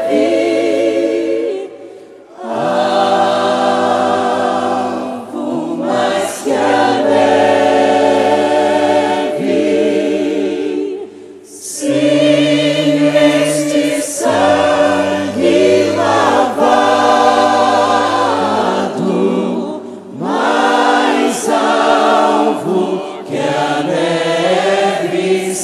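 Gospel worship singing by a choir of voices, in long held phrases with vibrato and brief pauses between them.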